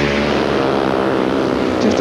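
Speedway motorcycles racing flat out, their 500cc single-cylinder methanol engines running at high revs in a steady, loud, multi-engine drone.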